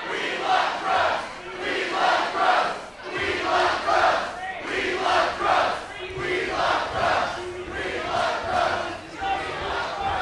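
Wrestling crowd chanting in unison, a short two-beat phrase repeated about every second and a half.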